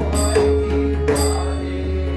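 Devotional Kali kirtan: voices chanting over sustained held notes, with a sharp percussion strike that rings on about once a second.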